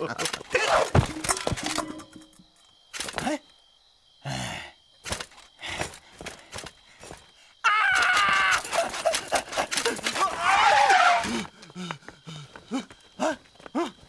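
Cartoon voices making wordless vocal sounds, gasps and groans, broken by short clicks and knocks. About halfway through comes a louder stretch of wavering voices lasting several seconds.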